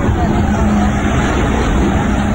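Highway traffic heard from the roadside: a steady rush of passing vehicles with a low engine hum, and a faint voice underneath.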